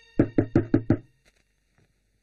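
Five quick knocks on a wooden door, about five a second, then stopping.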